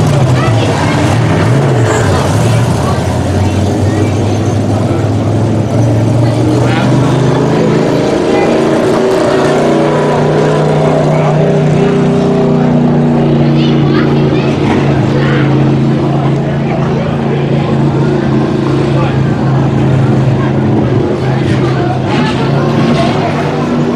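Several Sport Mod dirt-track race car engines running on the oval, a steady layered drone that grows fuller and stronger about a third of the way in.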